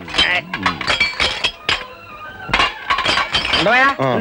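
Voices talking over the clink and clatter of steel plates and tumblers being handled, with several sharp metal strikes.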